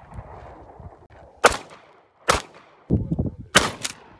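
Three single gunshots, the gaps between them about a second and a bit longer.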